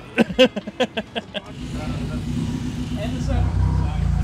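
Laughter for about a second and a half, then a propane-fuelled Yale forklift's engine running steadily. It gets louder near the end as the forklift moves a heavy machine.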